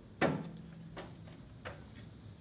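Loose wooden upright-piano cabinet panels knocking as they are handled: one loud knock just after the start with a low tone ringing on for about a second, then two lighter knocks.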